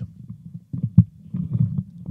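Microphone handling noise: irregular low rumbles and bumps from a dynamic microphone being handled on its stand clip during a mic swap, picked up through the live mic, with a sharper knock about halfway through.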